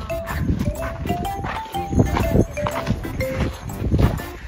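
Background music: a simple melody of held single notes stepping up in pitch, over a run of short crunching footsteps on gritty granite sand.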